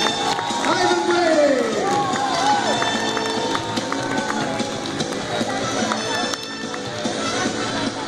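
A live band playing in a hall, with loud audience voices close to the phone, most prominent in the first two or three seconds.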